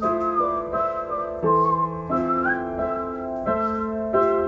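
Upright piano playing chords that change about every second, with a whistled melody line above them that bends and wavers in pitch.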